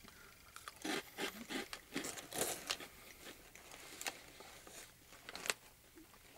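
Faint crunching of a crisp shrimp-and-squid cracker stick being chewed: a run of irregular crunches from about a second in, and one more near the end.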